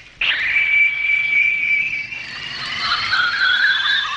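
Cartoon sound effect of a small artificial sun being launched from a gadget: a whistling electronic tone starts suddenly a moment in and holds steady, while a second tone rises slowly in pitch over the last couple of seconds.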